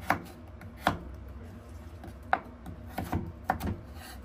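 Kitchen knife cutting carrots on a wooden cutting board. There are several sharp knocks at an uneven pace as the blade goes through each piece and strikes the board.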